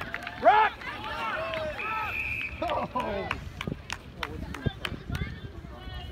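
Distant shouting voices of players and people on the sideline, with a short steady whistle blast about two seconds in, typical of a referee stopping play, and a few sharp taps later on.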